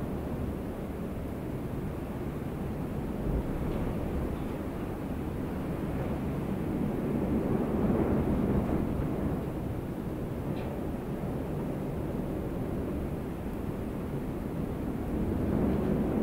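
Steady low rumble with a hiss over it, like street or car-cabin ambience, swelling slightly about halfway through.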